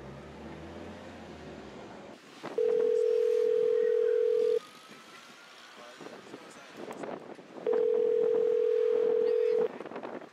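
Telephone ringback tone: a call ringing at the other end, heard as two steady, single-pitched tones about two seconds long and about three seconds apart.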